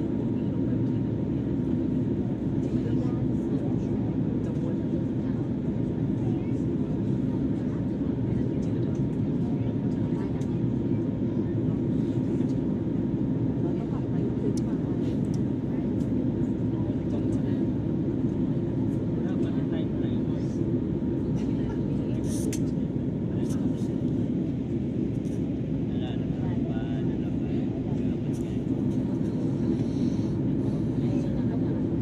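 Steady airliner cabin noise from the engines and airflow during descent for landing: an even, low rush with a few faint clicks.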